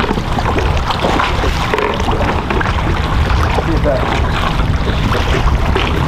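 Steady wind buffeting the microphone over choppy open water, with scattered small knocks and splashes.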